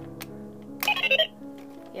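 Buzz Lightyear Signature Collection toy giving a short burst of electronic beeps and chirps, set off by its wrist communicator, about a second in, with a click at the start. Steady background music plays underneath.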